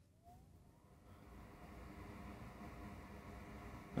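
Bench fume extractor fan switched on: a short rising whine as it starts, then a faint, steady whir that builds over the first two seconds and holds.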